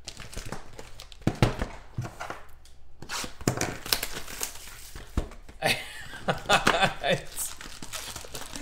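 Plastic wrapping on a trading card box being torn off and crumpled by hand, a run of sharp crinkling and tearing crackles, followed by the cardboard box being opened.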